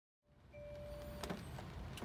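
Low rumble inside the Hyundai Ioniq Electric's cabin, cutting in a moment after the start, with a short steady tone and then a click about a second in.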